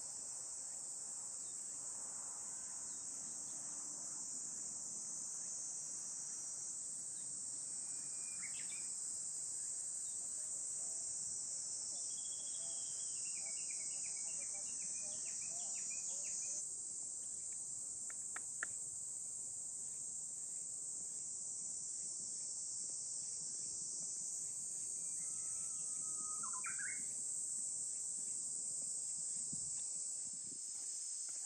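A steady, high-pitched insect chorus, with a few short chirps about a third of the way in, again in the middle, and once near the end, and a single sharp click a little past halfway.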